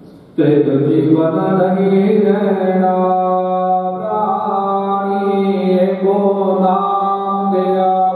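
A man's voice chanting Gurbani in long, held notes, starting suddenly about half a second in, with a brief dip about four seconds in.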